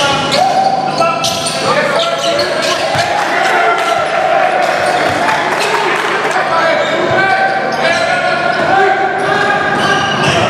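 Basketball dribbled on a hardwood gym floor, a steady run of sharp bounces echoing in a large gym, with players' and spectators' voices throughout.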